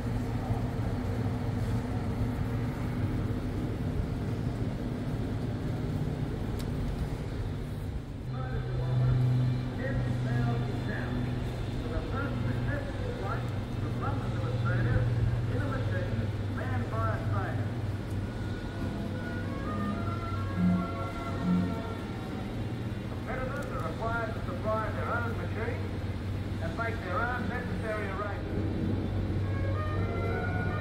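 A steady low drone in a large hall. About eight seconds in, the soundtrack of an exhibit film playing over loudspeakers joins it: music and indistinct voices.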